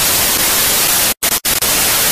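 Loud television static hiss, used as a glitch transition sound effect. It cuts out twice for a split second a little past the middle.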